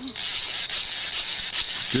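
A high, steady chirring of night insects, with rapid fine clicking from a fishing reel's line clicker as the catfish is reeled in; the clicker is called a little bit maddening.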